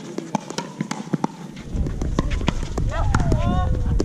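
Many sharp, irregular clicks of pickleball paddles striking and balls bouncing on the hard court, with distant voices underneath. A low rumble comes in about a second and a half in.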